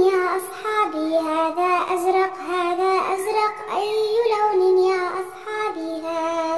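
A child's voice singing a children's song over backing music, in long held notes that step up and down in pitch.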